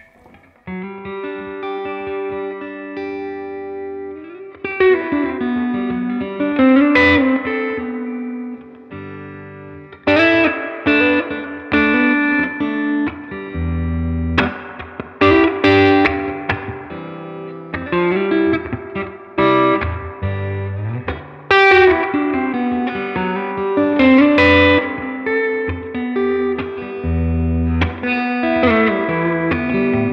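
Electric guitar played through a Gibson Falcon 20 tube combo amp with its reverb turned up: chords and single-note lines with a light overdrive. It starts softly and gets louder after about five seconds, with hard chord strikes now and then.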